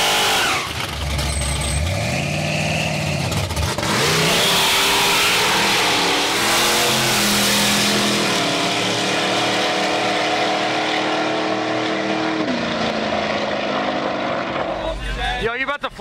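Street-race cars at full throttle: engines revving up and down at the launch, then pulling hard down the road, the engine note dropping in steps at several gearshifts.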